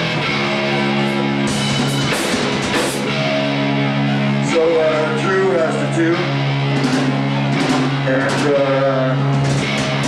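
Live rock band playing loud: electric guitars holding sustained notes over drums with cymbal hits, and a voice through the microphone over the top in the middle of the passage.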